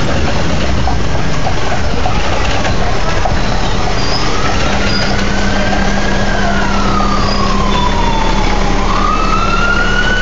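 An emergency vehicle siren wailing, coming in about three seconds in: a slow rise and fall in pitch, then rising again near the end. It sounds over steady, loud street noise.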